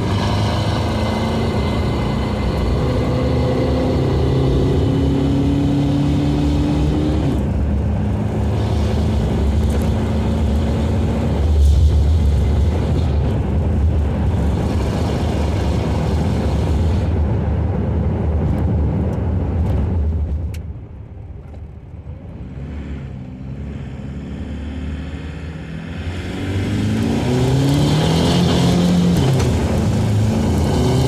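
Swapped-in VW 1.9 L ALH TDI diesel engine with a GTC2262 turbocharger, heard from inside the truck's cab pulling hard under acceleration. The engine note climbs, breaks about seven seconds in and pulls on; about twenty seconds in it goes quieter for several seconds, then climbs again near the end.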